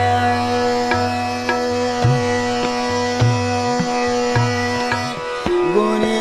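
Hindustani classical khayal music: a long sustained note, sung with harmonium accompaniment, held over medium-tempo jhaptaal tabla strokes that fall about once a second. The note breaks off about five seconds in, and a new gliding phrase starts just before the end.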